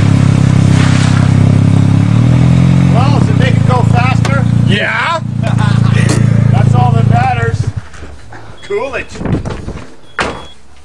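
Nissan 200SX engine revved hard and held at high rpm through a large hood-mounted exhaust pipe, loud and steady. It dips briefly about five seconds in, comes back, then cuts off sharply near the end as the throttle is released.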